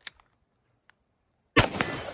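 A single shot from a CZ Bren 2 MS 11.5-inch carbine in 5.56, sudden and loud about a second and a half in, its echo trailing off. It is the last round in the magazine: the bolt then locks back open on empty.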